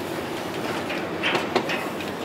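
Montaz Mautino basket lift's curve machinery running: a steady mechanical rumble of the haul rope over the wheels and sheaves, with a short burst of clattering and knocking about a second and a half in.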